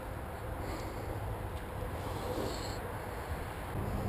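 Steady outdoor background noise: a low, continuous rumble under a faint hiss, with no distinct events.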